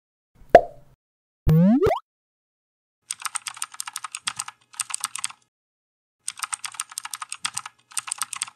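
Intro-animation sound effects: a sharp pop about half a second in, a short rising tone just after, then quick keyboard-typing clicks in several bursts as text is typed on screen.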